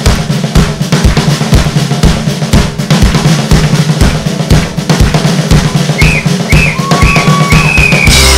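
Drum kit playing a steady beat on bass drum and snare. Near the end, a whistle gives three short blasts and then a longer one over the drums.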